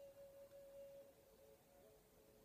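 Near silence with a faint, steady pure tone; a second, slightly lower tone comes in near the end.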